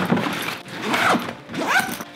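Zipper on a fabric duffel bag being worked, the slider running along the teeth with the bag's fabric rustling.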